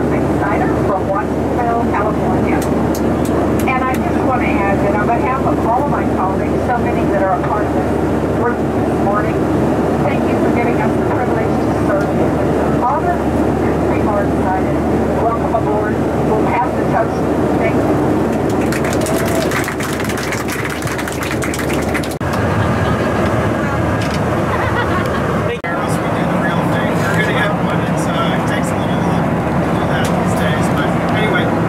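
Indistinct speech over the cabin public-address system above the steady drone of a Boeing 737-800 cabin in flight, with a brief rush of noise about twenty seconds in.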